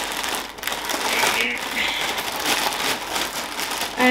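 Plastic mailing bag crinkling and rustling as it is opened and handled.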